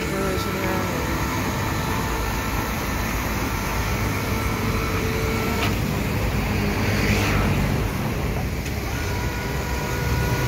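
Small 110-volt electric wire-rope hoist (winch) running steadily as it lifts and lowers a 55-gallon drum loaded with scrap metal, with an even motor hum.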